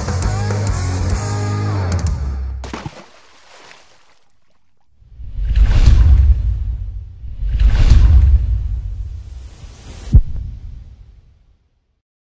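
Background music that ends about three seconds in. After a short lull come two swelling whoosh sound effects and then a single sharp impact hit, which rings out and fades.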